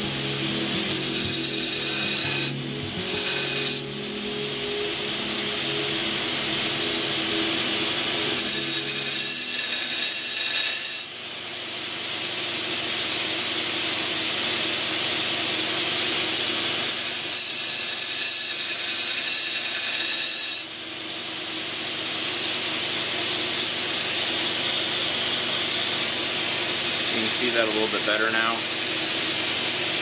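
Belt grinder running with a steel knife blade pressed against the abrasive belt, a steady grinding hiss that dips briefly a few times and comes back. A man's voice starts near the end.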